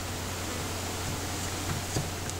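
Steady background hiss with a low hum, with no distinct event.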